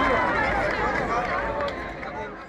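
Crowd chatter: many people talking at once, with no single voice standing out, easing off slightly near the end.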